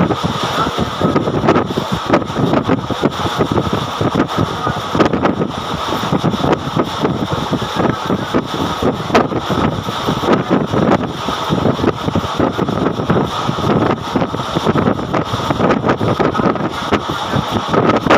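Passenger express train running at speed, about 110 km/h, heard from its open doorway: a steady rush of wind on the microphone over the rapid rattle and clatter of the coach and its wheels on the rails.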